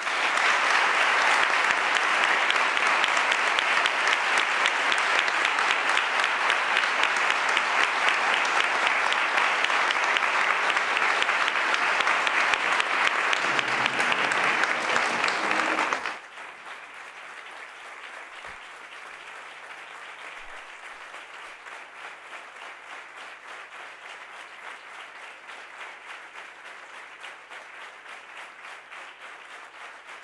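A large audience applauding steadily. The clapping is loud for about sixteen seconds, then drops suddenly to a much quieter level and carries on.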